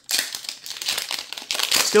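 Foil wrapper of a Magic: The Gathering booster pack torn open and crinkled by hand: a dense, papery crackle that grows brighter toward the end as the wrapper is pulled apart.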